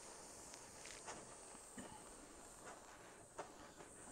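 Near silence: faint room tone with a few soft handling clicks.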